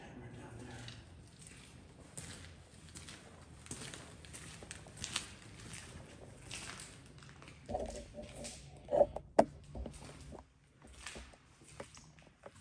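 Footsteps and shuffling on a debris-strewn concrete floor, a run of small crunches and crackles, with two sharp knocks about nine seconds in.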